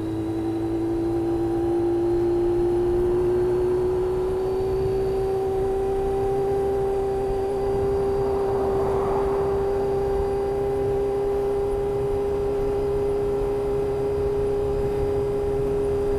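Motorcycle engine running steadily under light throttle at about 35–45 km/h, its pitch rising slightly in the first few seconds and then holding, with wind and road noise beneath.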